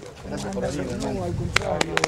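Voices of people greeting one another, with three sharp smacks in quick succession near the end, as two people embrace.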